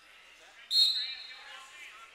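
A sharp, high-pitched referee's whistle blast sounds suddenly about two-thirds of a second in and fades over about a second, over the murmur of voices in a wrestling gym.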